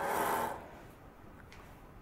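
A curtain being drawn across a window: a short swish of fabric that fades out about half a second in, followed by faint handling ticks.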